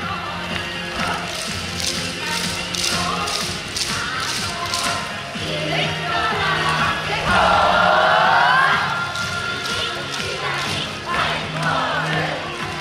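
Upbeat yosakoi dance music playing over a sound system, with sharp clacks and claps from the dancers about twice a second. A loud, held vocal line rises and bends in pitch around the middle and is the loudest part.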